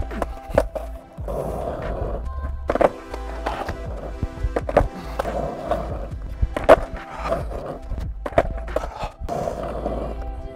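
Skateboard on asphalt during repeated fakie bigspin attempts: wheels rolling, and a series of sharp clacks as the tail pops and the board and wheels slap back down, over background music.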